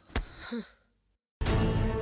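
A short click and a brief falling sigh-like vocal sound, then a moment of dead silence, then dramatic background music comes in with a sustained chord about a second and a half in.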